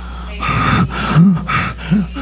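A man's heavy, gasping breaths drawn close into a handheld microphone, five or six in quick succession, some with a short voiced catch in them, between bursts of impassioned preaching.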